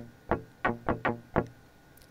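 Sampled electric guitar from the Evolution Electric Guitar – Strawberry library playing four short single notes about a third of a second apart, each sounding as a MIDI note is dragged to a new pitch in the chord detection zone, the virtual guitarist fretting each note.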